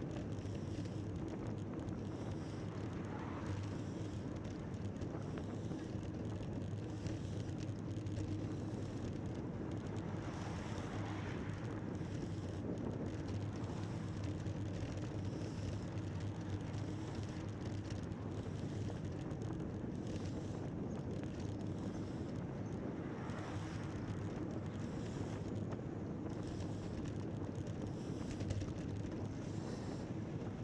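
Steady wind rush on the microphone and road noise of a road bicycle riding at a steady pace, with a few faint swells of passing motor traffic.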